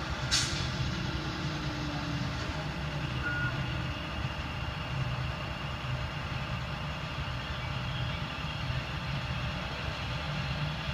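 Tow truck's engine idling steadily, with a brief sharp noise about half a second in.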